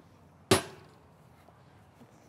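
A single sharp snap about half a second in, with a brief ring-down, as a golf disc is thrown.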